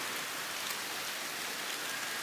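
A steady, even hiss with no separate events, like light rain falling, heard in a pause between speech.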